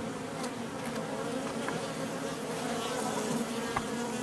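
Honeybees buzzing in a steady hum whose pitch wavers slightly. These are angry guard bees flying close around the microphone.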